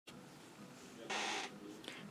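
Camera being handled as recording begins: faint room tone, a brief rustle about a second in, and a small click near the end.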